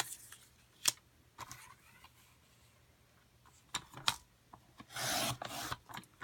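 Patterned paper being shifted and tapped into place on a sliding paper trimmer, then a short rasping stroke about five seconds in as the trimmer's blade slides down and cuts off a one-inch strip.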